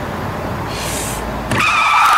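Car running with a low steady road rumble, then about a second and a half in a sudden loud squeal of tires as the car lurches off.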